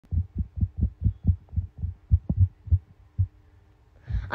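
Rapid low, muffled thumps, about four a second, over a faint steady hum; they grow irregular and stop about three seconds in.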